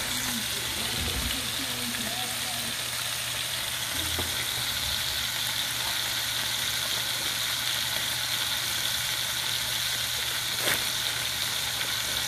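Hamburger patties frying in their grease in a cast-iron skillet, a steady sizzle. Near the end there is a single light knock.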